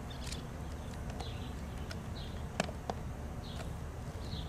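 Steady outdoor background noise with faint, scattered high chirps, and two sharp clicks close together past the middle, from the load tester's clamp leads being handled on the battery terminals.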